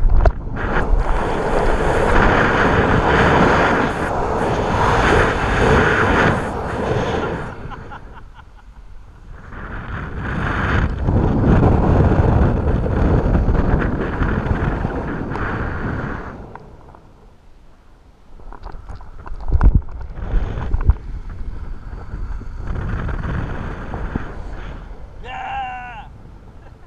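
Wind rushing over an action camera's microphone during a bungee jump's freefall and rebounds, coming in three long loud surges with quieter lulls between. A few sharp knocks come about two-thirds of the way in, and a short shout is heard near the end.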